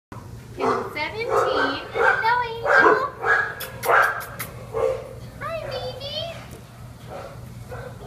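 Dog barking: a run of short, loud barks over the first five seconds, then quieter.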